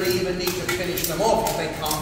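Speech only: a man talking to an audience.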